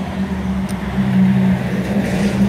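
A motor vehicle's engine running steadily, a continuous low hum.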